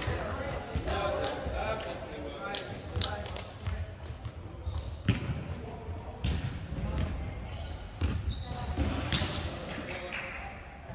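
Scattered thuds of a volleyball being hit and bouncing on a wooden sports-hall floor, ringing in the large hall, with players' voices.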